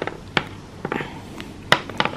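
Black cylindrical chess pieces being set down one at a time on a clear chess board: a few sharp clicks, the loudest nearly two seconds in.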